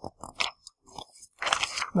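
Irregular crackles and clicks of something being handled close to the lectern microphone, thickening into a short rustling stretch in the second half.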